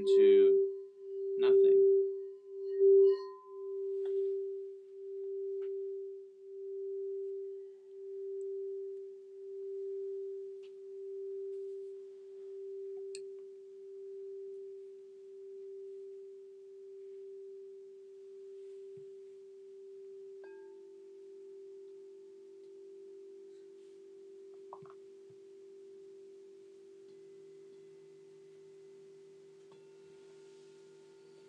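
A crystal singing bowl rings one steady pure tone with a slow, regular waver, fading gradually over about twenty seconds. A few short knocks come in the first three seconds. About two-thirds through, a second, lower bowl tone quietly joins it.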